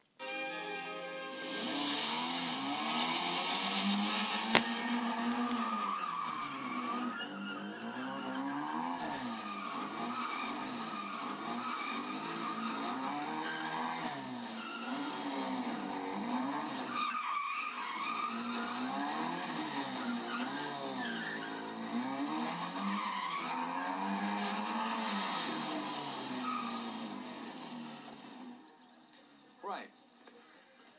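Engine of a small Mini-based autotest car revving up and down again and again as it is driven hard through tight manoeuvres, with tyre squeal. The engine note fades out near the end.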